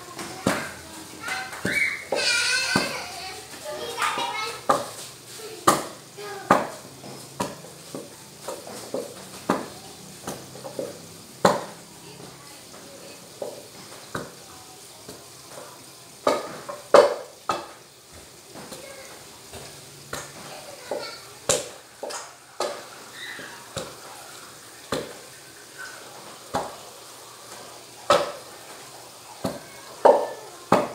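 A pestle pounding boiled, mashed bananas in a stainless-steel pot for nilupak: short, sharp thuds about once a second at an uneven pace.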